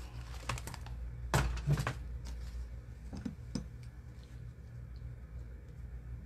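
A handful of light, irregular clicks and taps from small items being handled on a work table, most of them in the first half, over a steady low hum.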